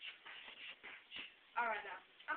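Shuffling and rustling noises in a small room, several short scuffs in quick succession, then a voice starts speaking near the end.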